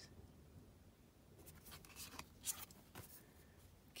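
Faint rustle and slide of tarot cards being handled, with a few soft scrapes and clicks about two seconds in.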